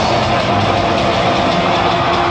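Heavy metal band playing live through a PA: a dense wall of distorted electric guitar and drums, with one note held steady through it.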